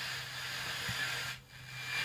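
Blaupunkt Mannheim car radio hissing with static while its dial is tuned between stations. The hiss dips briefly near the end.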